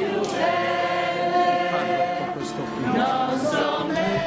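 A crowd of people singing a slow hymn together, the voices holding long notes.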